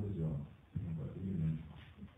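A man's low voice over a microphone making two short vocal sounds, one after the other.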